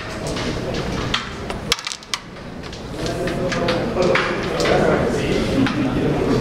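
A carrom shot: the flicked striker clacks into the carrom men, giving a quick run of sharp clicks about one and a half to two seconds in, over voices in the background.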